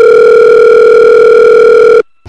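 Telephone line tone: one loud, steady beep lasting about two seconds that starts and cuts off abruptly, heard as the call is put through to the operator.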